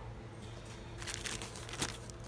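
Plastic zip-lock bag crinkling as it is picked up and handled, starting about a second in.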